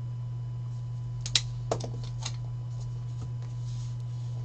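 Several sharp clicks and taps, the loudest about a second and a half in, over a steady low hum.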